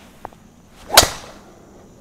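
A golf driver swung at a teed ball: a short swish, then one sharp crack of clubface on ball about a second in, fading quickly.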